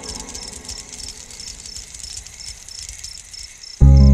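A cricket chirping steadily at about three chirps a second over faint background noise. Just before the end, loud sustained music chords come in suddenly.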